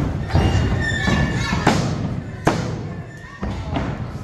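A few sharp thuds on a wrestling ring's padded canvas, spaced roughly a second apart, with music and voices in the hall behind them.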